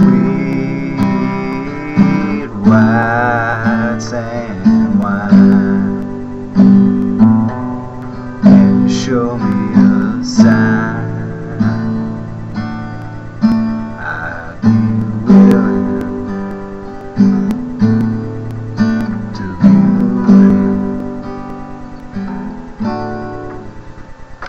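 Acoustic guitar strummed in a steady rhythm, with a strong accented strum about every second and lighter strums in between, each chord ringing and fading. The last strums are softer and the playing stops near the end.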